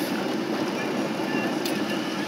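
Steady low hum of a vehicle engine idling, with a fan running, and a faint click near the end.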